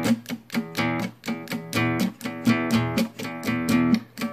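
Acoustic guitar chugging two-string E and B root-and-fifth power chords in a steady rhythm of short strums, the strings damped by the picking hand to give a muted, choppy sound.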